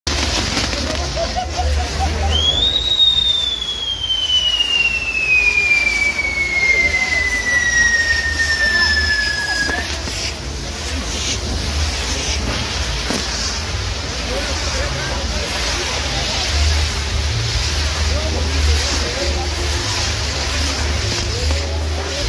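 Fireworks on a pyrotechnic castle wheel burning, with a steady loud hiss of spark-throwing fountains. From about two seconds in until about ten seconds in, a single whistle falls slowly in pitch over it.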